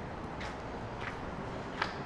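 Three faint footsteps of sneakers on concrete, about two-thirds of a second apart, over a low steady background hiss.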